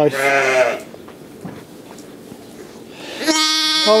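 Sheep bleating, with a steady, high-pitched bleat near the end.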